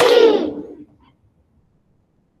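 A classroom of children cheering together, heard over a video call. It dies away within the first second and then cuts to silence.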